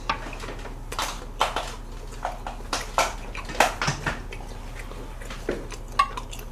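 Tableware clatter: chopsticks and utensils knocking against dishes and a griddle in a string of irregular, sharp clicks over a steady low hum.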